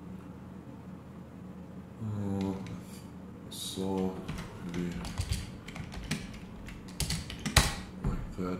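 Typing on a computer keyboard: a run of key clicks in the second half, ending in a sharper, louder click near the end.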